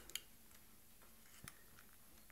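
Near silence, with a couple of faint clicks just after the start and another faint click about halfway through.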